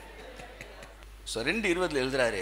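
A short pause with a few faint ticks, then a man's voice resumes speaking about two-thirds of the way in.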